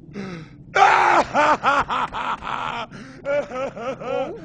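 A person's voice making wordless gasping sounds: a sharp breathy gasp about a second in, then a rapid run of short pitched cries about five a second, and a shorter run near the end.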